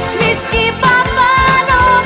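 Filipino pop (OPM) love song from the 1980s–90s: a steady drum beat under a long held melody line that comes in a little under a second in.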